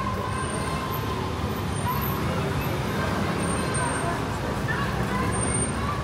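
Steady city street traffic, a low engine rumble, with passersby talking faintly.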